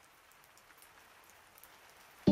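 Faint rain falling, an even hiss dotted with scattered drop ticks that grows slightly louder.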